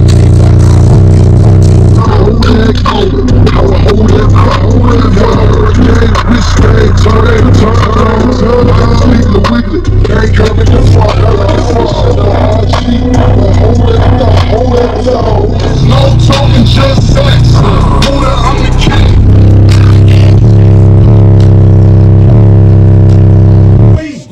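Two 15-inch Tantric Sounds SHD subwoofers in a ported enclosure, on about 20,000 watts of amplification, playing bass-heavy music at extreme level. A deep steady bass note dominates and overloads the recording, with rattling over the top.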